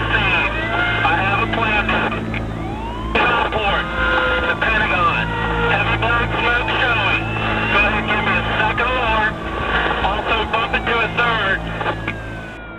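Overlapping, narrow-band emergency radio dispatch traffic, with a brief break in transmission about two and a half seconds in. A steady low hum runs underneath, and a siren wails behind the voices.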